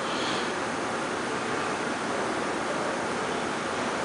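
A steady, even hiss with no other events, holding at one level throughout.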